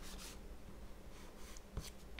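A pastel crayon scratching on sketchbook paper in quick coloring strokes that stop about a third of a second in. A light tap follows near the end.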